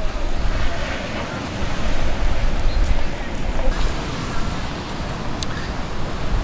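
Surf washing onto a sandy beach, a steady rush with wind rumbling on the microphone and faint voices of beachgoers in the background.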